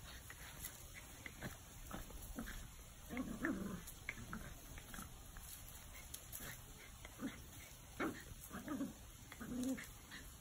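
Welsh Terrier puppy growling in short throaty bursts while squaring off with a hen: one about three seconds in and several more near the end.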